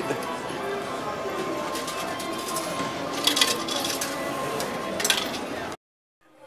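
Casino floor background: a steady din of distant voices and faint music, with a few short clinks. It cuts off abruptly near the end.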